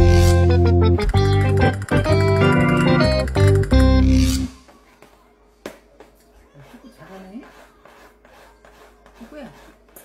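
Loud keyboard-style background music with short, detached notes that cuts off suddenly about four and a half seconds in. After it comes a faint stretch of scattered light clicks and scratches, with a short voice near the end.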